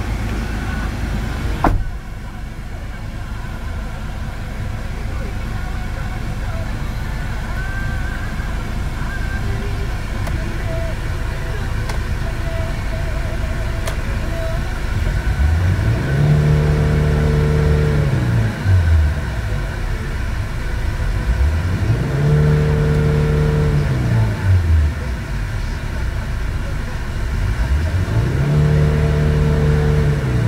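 Hyundai Starex van engine idling in Park, then free-revved three times in the second half. Each time the pitch rises, holds for about two seconds, then falls back to idle.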